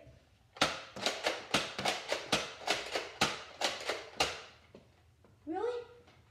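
Nerf foam-dart blaster fired in a rapid run of about fifteen sharp clacks, roughly four a second, over some three and a half seconds.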